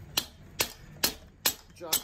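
Sharp knocks at an even pace of about two a second, four in a row, made while a stuck cylinder barrel (jug) of an air-cooled VW 1600 engine is being worked loose from its studs.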